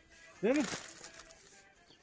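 A man's voice asking a short question ("değil mi?"), with a brief soft rustle or hiss under and just after it.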